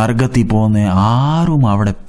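Speech only: a man preaching in Malayalam, drawing one word out for over a second with his pitch rising and then falling.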